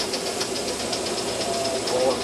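Aster S2 live-steam model train running past on garden track, with a rapid, even beat of about six a second as the engine draws its passenger cars along.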